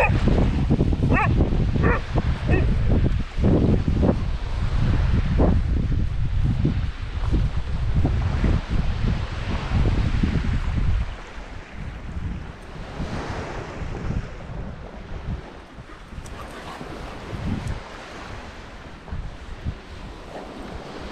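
Wind buffeting the microphone with a loud low rumble for about the first eleven seconds, then easing, over small waves washing onto the shore. A dog gives a few short barks in the first few seconds.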